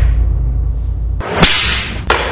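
A low rumble dies away, then, past the halfway point, a sharp crack is followed by a short rushing swish: a whip-crack whoosh sound effect.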